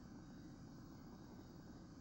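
Near silence: studio room tone with a faint low hum and hiss.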